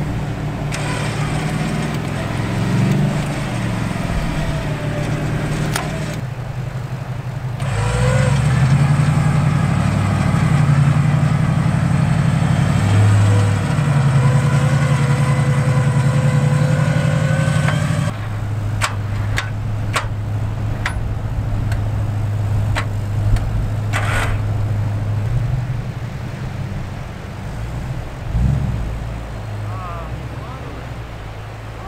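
Toyota 100-series LandCruiser V8 engine running under load as the bogged vehicle tries to drive out of soft sand, stuck to the diff and chassis rails. The engine gets louder with a changing pitch from about eight seconds in, drops back suddenly about eighteen seconds in, then runs steadily, with a few sharp clicks a little later.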